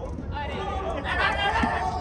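Indistinct chatter of several voices talking and calling out at once, over a low steady hum.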